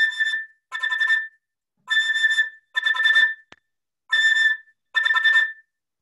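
Flute playing six short bursts of fast tongued repeated notes on a high A, each burst about half a second long, with brief gaps between them.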